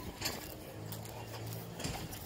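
Footsteps and rustling on grass from a dog walk, with a few light clicks. A low steady hum runs for about a second in the middle.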